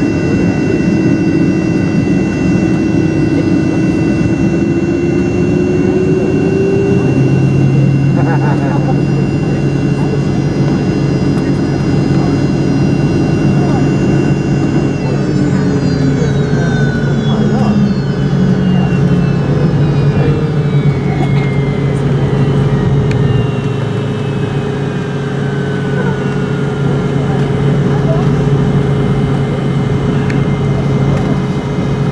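Inside the cabin of a Fokker 70 taxiing after landing, its rear-mounted Rolls-Royce Tay turbofans give a steady hum and whine. A low tone rises about a quarter of the way in. From about halfway, several whines glide slowly downward.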